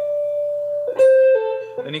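Electric guitar playing a legato phrase: one note rings on for about a second, a new note is sounded sharply about a second in, then it steps down to a lower note. A voice starts speaking near the end.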